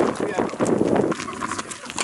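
Background voices of people talking outdoors, mixed with a run of footsteps on a dirt path.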